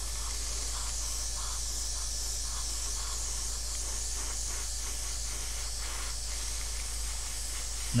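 Airbrush spraying clear coat onto a plastic model: a steady, even hiss of air and paint.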